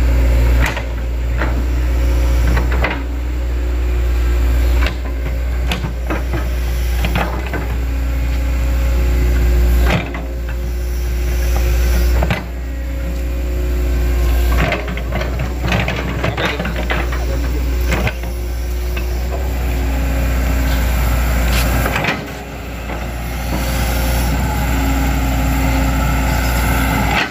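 Hitachi Zaxis crawler excavator's diesel engine and hydraulics working under load as the bucket pushes and scoops mud into a ditch. The engine sound builds and then drops off sharply every few seconds as each bucket stroke loads and releases, with scattered knocks and scrapes from the bucket.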